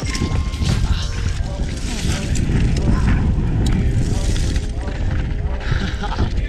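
Mountain bike descending a steep, rocky shale trail: a continuous rumble and rattle of tyres and bike over loose rocks, with wind rushing over the helmet camera's microphone.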